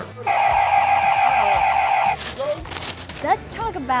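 An electric buzzer sounds one steady, harsh tone for about two seconds, then cuts off. It is the deli counter's buzzer for customers who hold up the line by talking on their cell phones.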